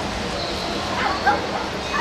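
A short, sharp voiced call about a second in, like a yelp or bark, over steady indoor hall noise.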